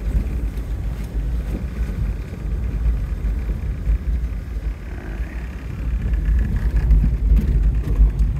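Car driving on an unpaved dirt road, heard from inside the cabin: a steady low rumble of engine and tyres on the dirt.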